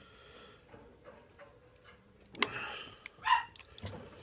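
Lime juice squirted from a plastic lime-shaped squeeze bottle onto ice in a glass: quiet at first, then two short squirts about a second apart in the second half, the second with a brief rising squeak.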